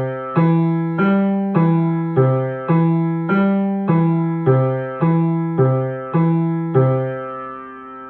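Piano played by the left hand alone: an even, steady run of about a dozen low single notes, C, E and G in a broken-chord pattern, roughly two notes a second. The run ends on a held whole note that fades away.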